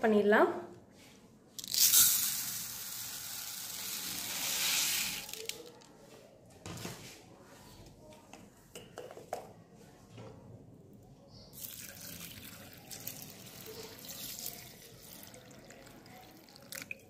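Raw long-grain rice poured from a small bowl into a larger bowl: a rushing hiss of grains for about four seconds, followed by a few light clicks. Near the end a softer hiss as water is poured over the rice from a plastic bottle.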